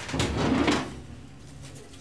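A man's low, breathy sigh that fades away after about a second.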